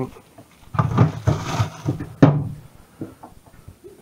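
Household fridge being rummaged: rustling and knocking of shelves and packaging, then a sharp knock a little over two seconds in as the fridge door is shut.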